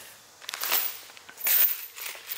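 A clear plastic bag of titanium bolts being picked up and handled, crinkling in two short bursts: about half a second in and again about a second and a half in.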